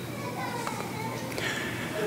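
Faint voices from the congregation, children's among them, over a low steady hum.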